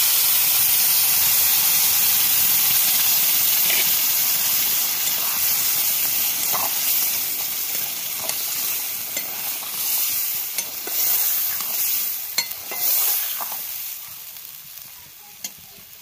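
Cooked dal poured into a hot metal wok of fried cauliflower, sizzling loudly, then stirred with a metal spatula. The sizzle fades over the second half, with a few sharp spatula scrapes against the pan near the end.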